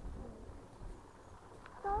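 Faint low rumble of open-air background with no distinct event; a voice says "oh, yeah" right at the end.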